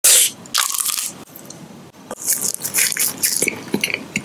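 Plastic wrapper of a small Purin Daifuku candy crinkling as it is handled close to the microphone, in sharp bursts at the start and a dense crackling run through the second half.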